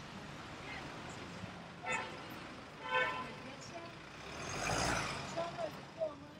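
Congested city street traffic: two short car horn toots about a second apart, then a vehicle passes close by, its noise swelling and fading.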